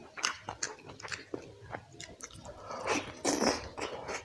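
Close-miked eating: wet chewing and mouth smacks over chicken curry and rice, with irregular sharp clicks and a louder wet stretch about three seconds in.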